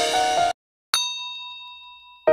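Background music cuts off about half a second in; a moment later a single bright ding, a chime-like sound effect, strikes once and rings out, slowly fading.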